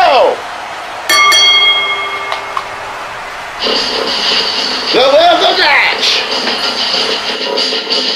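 A wrestling ring bell struck about a second in, ringing out and dying away over a second or so, marking the end of the match on the three count. From about three and a half seconds a music track plays, with a voice in it.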